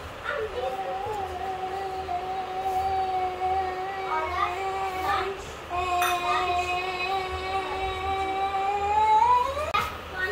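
A voice holding a long, steady note for about five seconds, then after a brief break a second long note that rises in pitch just before it stops.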